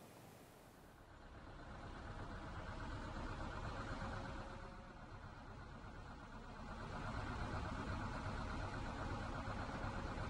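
Engine of an old Soviet-era PAZ bus running as the bus drives past and slows. Low rumble that swells, eases a little mid-way, then swells again.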